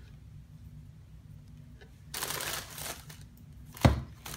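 Plastic packaging rustling for about a second while things are handled in the camera box, then a single sharp knock on the table near the end.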